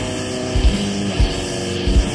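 Doom metal band playing: heavy, sustained distorted electric guitar and bass chords, with drum hits falling through the two seconds.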